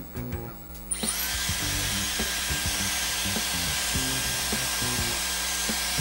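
Dyson Airwrap hair styler switched on about a second in: its motor spins up with a short rising whine, then runs with a steady rush of air and a high, steady whine as it blows through a brush attachment held in the hair.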